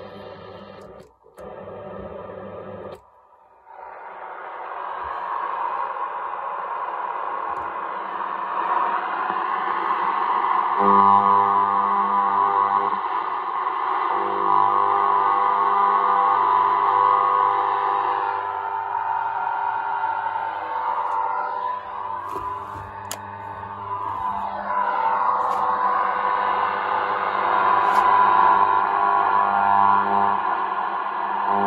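Sailor 66T shortwave receiver's loudspeaker giving out band noise while being switched and tuned on the 80-metre band. The sound cuts out twice briefly near the start as the filter selector is turned, then a rushing static builds with steady heterodyne tones and whistles that glide in pitch as the dial moves.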